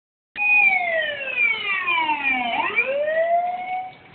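A siren wailing: it starts abruptly, its pitch falls slowly for about two seconds, then rises again before fading near the end.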